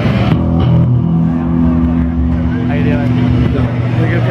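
Loud amplified electric guitar and bass holding a low, steady droning chord.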